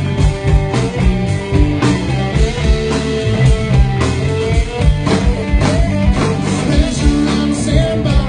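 Live rock band playing: electric guitars and a drum kit keeping a steady beat.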